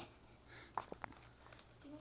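A few faint rustles and taps of gift-wrapping paper on a box being handled, clustered about a second in.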